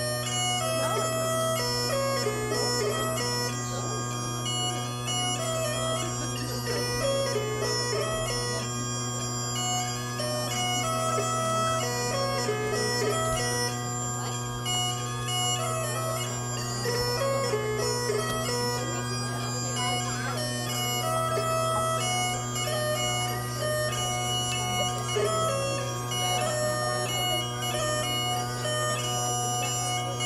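Great Highland bagpipe playing a dance tune: the chanter melody runs continuously over the steady hum of the drones.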